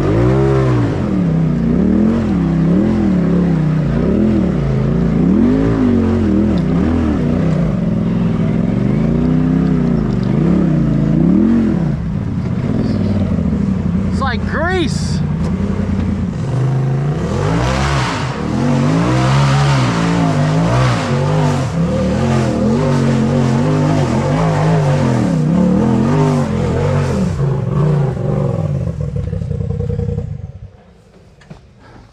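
Polaris RZR side-by-side engine revving up and down over and over, about once a second, as it crawls over rocks, heard from the driver's seat. The revs steady for a few seconds midway, and the engine stops near the end.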